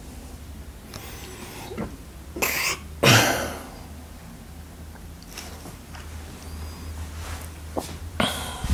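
A person coughing: a short burst about two and a half seconds in, then a much louder one just after three seconds that fades over about half a second, over a steady low rumble.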